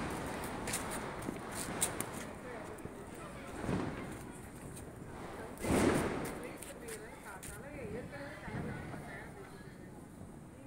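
Firecracker bangs, muffled: a smaller one a little under four seconds in and the loudest about six seconds in, each followed by a short tail, with a few faint crackles before them and faint voices after.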